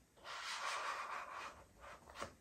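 Cardboard inner tray of a watch-band box sliding out of its sleeve: a soft rubbing hiss lasting about a second and a half.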